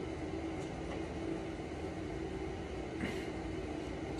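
Steady low machine hum with a faint constant tone, the room's background noise. A short faint breath comes about three seconds in.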